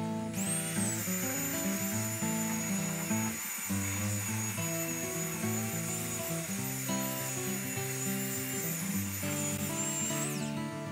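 Handheld belt sander running on a pine tabletop, a steady high motor whine that spins up just after the start and winds down at the very end, under background music.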